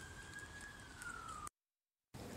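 A faint, thin whistle-like tone, held and then slowly sagging in pitch, cut off abruptly by dead silence about one and a half seconds in.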